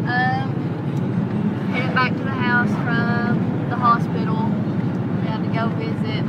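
Steady low rumble of a car's engine and road noise heard from inside the moving car, with voices talking over it at intervals.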